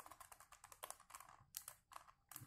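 Faint, irregular plastic clicking and clacking of a 3x3 Rubik's Cube's layers being turned by hand.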